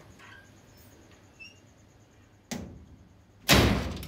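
Two thuds over faint room tone, about a second apart; the second is louder and longer and dies away over about half a second.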